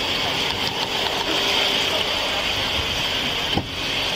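Steady hum and hiss of a parked police car's engine idling, heard from inside the car through its dash camera. A faint voice is in the background, and a sharp click comes near the end.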